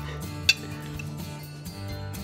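A single sharp clink of a metal fork against a plate about half a second in, over background music with steady held notes.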